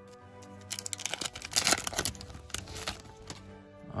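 Foil wrapper of an opened trading-card pack crinkling as the cards are pulled out, in two spells about a second in and again near the two-second mark, over steady background music.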